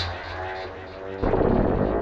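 Software synthesizer played from a MIDI keyboard controller: a deep, buzzy sustained note that fades, then a new note comes in a little over a second in, its tone shifting as parameter knobs are turned.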